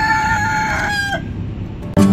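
A rooster crowing: the long, held final note of the crow, ending about a second in.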